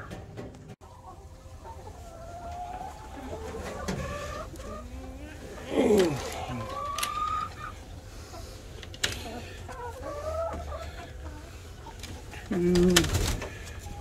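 Domestic hens calling and clucking, several short calls that rise and fall in pitch, with a few sharp clicks in between.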